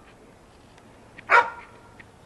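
A dog barks once, a single short, loud bark about a second and a half in.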